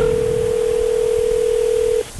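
Telephone ringback tone heard over a landline: one steady, loud two-second ring, cutting off sharply. It is the outgoing call ringing at the other end before voicemail answers.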